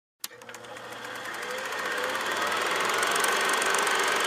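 A click, then a rapid, even mechanical rattle that grows steadily louder.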